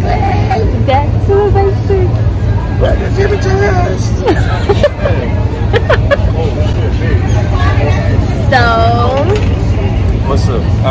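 Conversational voices and laughter over a steady low rumble, with one loud, high vocal burst near the end.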